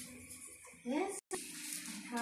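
Electric pedestal fan running with a steady rushing hiss, and a brief snatch of a voice about a second in. The sound cuts out completely for a moment right after.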